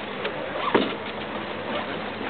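Radio-controlled scale rock crawler running over rocks: its electric motor and geared drivetrain work under load as it climbs, under a steady outdoor hiss, with one short louder sound about three-quarters of a second in.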